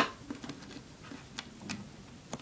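A few faint, irregular clicks of plastic pony beads tapping together as stretch cord is threaded through them.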